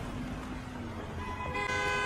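A car horn gives one long, steady honk starting in the second half, over the low rumble of city street traffic.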